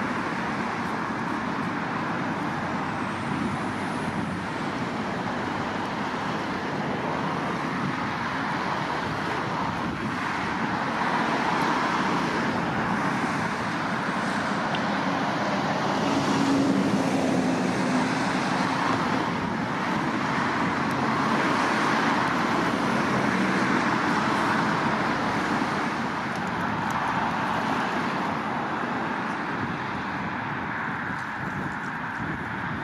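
Steady road traffic noise on a street, with the rush of passing vehicles swelling louder a few times.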